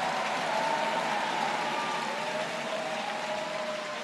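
Steady velodrome ambience from the race broadcast: a hiss of crowd noise and track bikes whirring on the boards, with a few faint tones that slowly fall in pitch.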